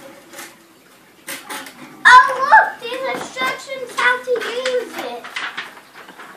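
A young girl's high-pitched, excited voice starts about two seconds in and carries on for about three seconds, without clear words. Light rustling and clatter of cardboard boxes and gift wrap run underneath.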